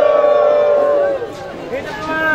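A voice holds one long, slightly falling note for just over a second, then gives way to a quieter mix of crowd voices.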